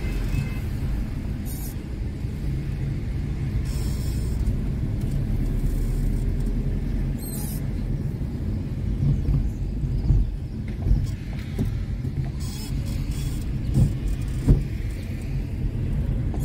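Car engine and road noise heard from inside the cabin as the car creeps slowly along: a steady low rumble, with a few brief hissy scratches on top.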